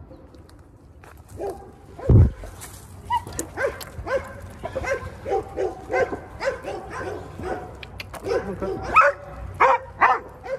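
Dogs barking over and over, a few barks a second, starting about a second in, with a loud thump on the microphone about two seconds in.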